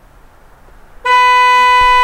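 A car horn starts suddenly about a second in and sounds one long, loud, steady blast.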